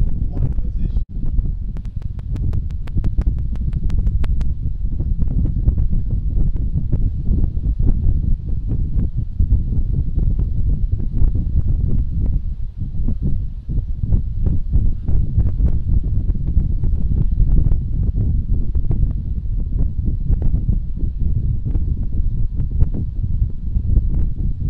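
Wind buffeting the microphone: a loud, gusting low rumble. For a couple of seconds early on, a rapid run of sharp clicks, about eight a second.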